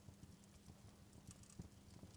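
Near silence: a faint low hum with a few soft, scattered ticks.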